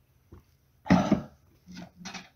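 A person coughing: one loud cough about a second in, followed by a shorter, weaker one near the end.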